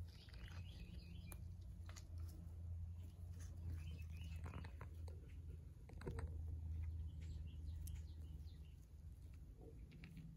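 Faint small clicks and crackles of turtles moving over dry leaf litter and mulch and nibbling at fruit, over a steady low hum.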